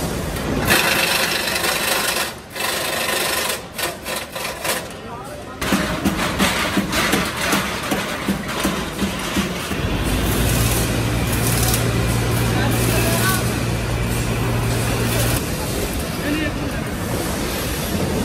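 Assembly-line factory noise: irregular knocks and clatter of metal parts being handled, with voices in the background. A steady low machine hum starts about ten seconds in and stops about five seconds later.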